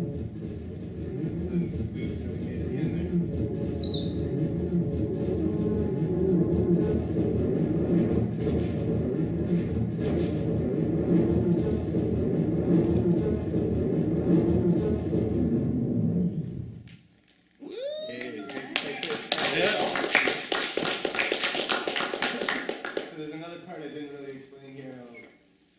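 Homemade analog looper, a modified turntable reading magnetic discs, plays back a dense layered loop that cuts off abruptly about two-thirds of the way in. A quick rising pitch sweep follows, then a brighter, scratchy loop with rapid clicks that fades near the end.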